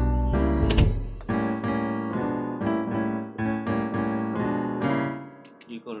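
Software grand piano (Logic's Steinway Grand Piano) playing chords and a melody over a low bass line in a song-sketch playback, with a single sharp percussive hit about a second in. The music dies away shortly before the end.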